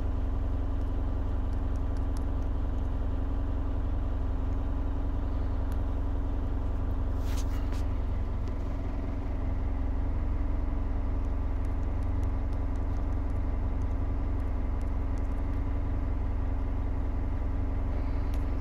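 A steady low machine hum, like an idling engine, with a brief hiss about seven seconds in.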